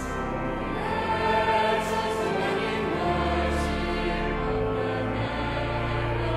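Mixed choir singing a Christmas carol over sustained pipe organ chords; the voices come in at the start, after a stretch of organ alone.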